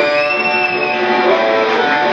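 Live acoustic guitars playing a blues tune, with one high note near the start that bends up and slides back down.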